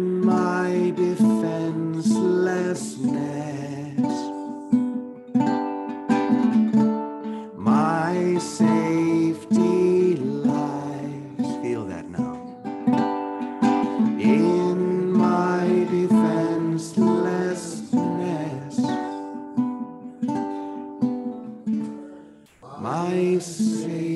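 A man singing a chorus to his own strummed ukulele chords.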